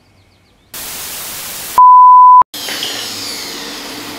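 Edited-in transition effect: a short burst of static hiss, then a loud, steady single-pitch beep lasting about two-thirds of a second that cuts off with a click, after which a steady hiss of background noise comes in.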